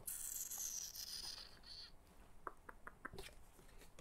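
Game cards being slid and handled on a cardboard game board: a soft, papery scraping rustle for about the first two seconds, then a few faint light taps.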